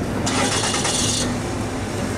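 Street traffic with idling car engines as a steady low hum, and a high hissing rattle lasting about a second, starting a quarter second in.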